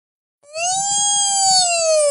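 A toddler's long crying wail: one sustained high note that starts about half a second in, rises slightly, then slowly sinks in pitch.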